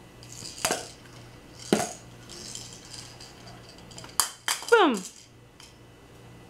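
Hard plastic toy rings and a clear plastic bin knocking and clattering on a wood floor as a baby handles them: two separate knocks about a second apart, then a quick cluster of clacks near the end with a short sound that drops steeply in pitch.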